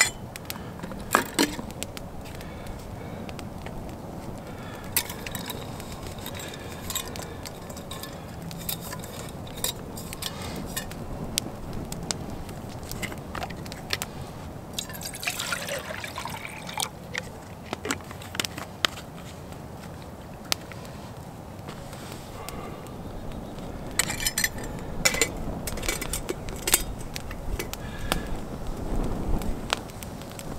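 Water poured from a plastic bottle into a steel camp mug, its pitch rising as the mug fills, about halfway through. Around it come scattered light clinks and clatter of metal cookware being handled, busiest near the end.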